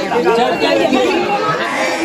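Chatter of several people talking at once, with no single voice standing out.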